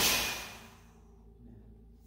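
A person's forceful breathy hiss right at the start, fading within about half a second, then only a faint low steady hum.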